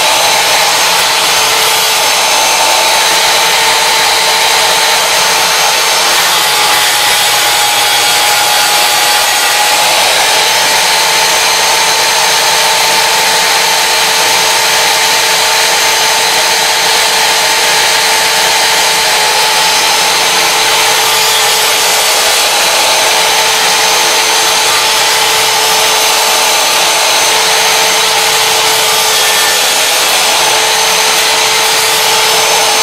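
Sliding miter saw with its blade running, making a shallow cut into half-inch aluminum plate: a loud, steady motor whine mixed with the blade cutting the metal, the pitch dipping slightly about six seconds in.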